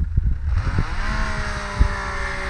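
Snowmobile engine running steadily at speed, growing louder about half a second in as the machine comes toward the microphone, with wind buffeting the microphone.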